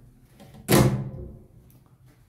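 A single sharp clack with a brief ring after it, about two-thirds of a second in: the small hinged metal door of the elevator cab's emergency-phone compartment being shut.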